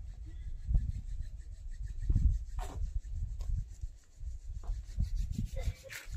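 Uneven low rumble and rubbing noise on the microphone, rising and falling in gusts, with a few faint clicks.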